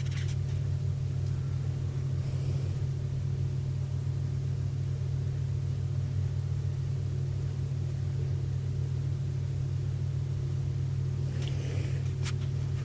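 A steady low hum with no other sound of note.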